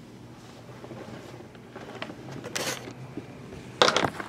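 Hands handling shrink-wrapped cardboard trading-card boxes: a brief rustle about two and a half seconds in, then a louder sudden rustle and knock near the end as a box is grabbed, over a faint low hum.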